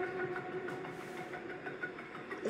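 A faint, steady held note with a few light ticks, slowly fading: a sustained chord from the military montage's soundtrack playing back.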